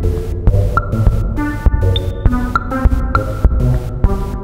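Electronic music from an Emona TIMS modular rack used as a drum machine: low thudding hits and sharp clicks in a steady pulse. They trigger an Akai synthesizer's arpeggiator, which plays a quick run of stepping notes.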